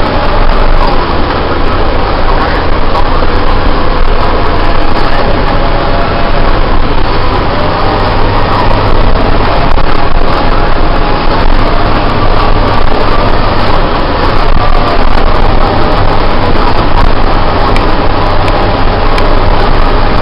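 Heavy snow-removal machine's diesel engine running loudly and steadily under way, heard from inside the operator's cab.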